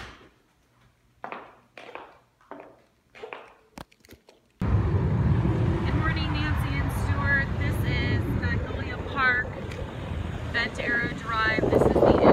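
Faint short snatches of voices in a quiet room at first. Then, starting suddenly about four and a half seconds in, wind rushing over the microphone and road noise from a moving car, with high chirps heard over it for a while.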